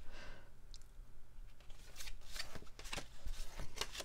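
Paper greeting cards being handled: soft rustles and crinkles with a few light taps as one card is opened and the next is picked up from the pile.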